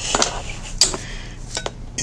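A few light clicks and taps as a clear acrylic fountain pen is lifted and handled, ending in a short double clink about a second and a half in.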